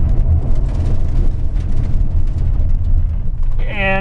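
Steady low rumble of a 2000 Ford Ranger 4x4's 4.0 L engine, road and tyre noise heard inside the cab as the truck brakes hard and slows. The ABS is switched off, so the wheels lock up during the stop.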